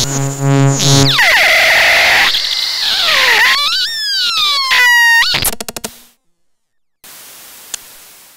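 Eurorack modular synthesizer noise music, its voices coming from IFM Fourses, Denum and Dunst modules with Mannequins Mangrove bass, all under a single fader's control. A buzzy droning tone gives way to a falling sweep and noise, then gliding, chirping pitched tones that bend up and down. It is chopped in quick stutters and cuts out about six seconds in, leaving faint hiss.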